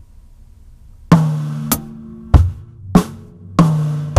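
Acoustic drum kit played slowly: after about a second of quiet, a drum lick starts with evenly spaced strokes roughly every half second, mixing bass drum, snare and ringing toms.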